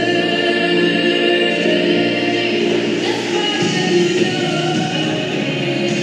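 Choral music: a choir singing long, held notes over a steady musical backing.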